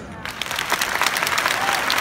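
A large audience applauding, starting a moment in and then keeping up steadily.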